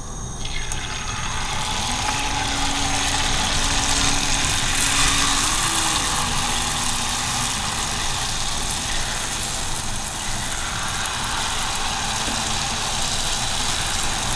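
Jalebi batter sizzling in hot oil in a frying pan as it is piped in. The sizzle builds over the first couple of seconds, then holds steady.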